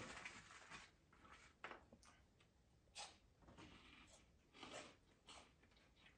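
Faint crunching and chewing of baked cheddar corn cheese balls, a handful of soft crunches spread through an otherwise quiet stretch.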